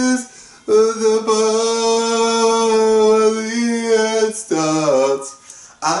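A man singing a pop song unaccompanied. About a second in he holds one long note for nearly four seconds, then sings a short falling phrase and picks up again near the end.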